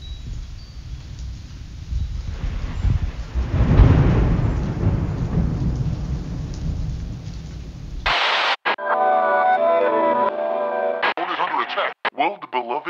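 Rumbling thunder with rain noise, swelling about four seconds in, used as a sampled interlude on a lo-fi beat tape. It cuts off abruptly about eight seconds in, and a voice sample follows.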